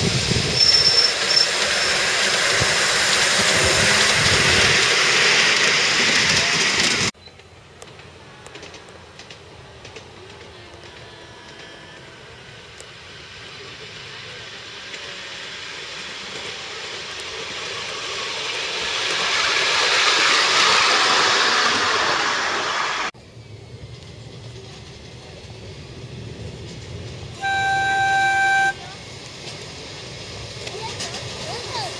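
Ride-on miniature trains running along a small-gauge track: the rumble and clatter of wheels on rail close by, then a train approaching and passing with the sound swelling and fading. Near the end, one short steady toot of a locomotive horn.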